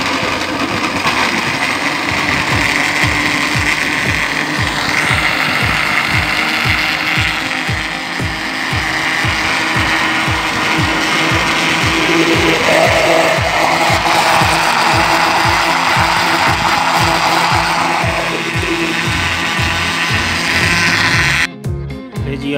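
Electric jar blender running, churning avocado with milk and cream into a milkshake. It is switched off abruptly near the end.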